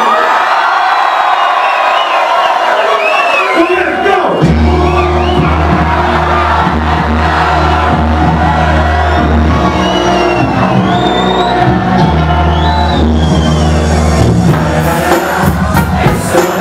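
Music played loudly over a nightclub sound system, with the bass dropped out for the first four seconds while the crowd whoops and cheers, then a heavy bass line coming back in about four seconds in.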